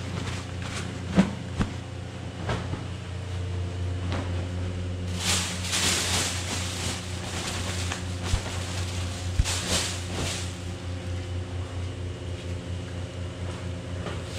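Plastic bag crinkling and cloth rustling as a pressed filter cloth full of beet pulp is stuffed into it, in two bursts, over a steady low machine hum; a few sharp knocks come in the first three seconds.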